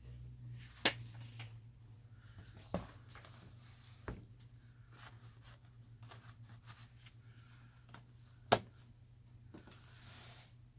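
A paper journal page with a sewn fabric ruffle being handled and fitted into a ring binder: faint paper and fabric rustling with a few sharp clicks, the loudest near the end as the binder rings snap. A low steady hum lies under it.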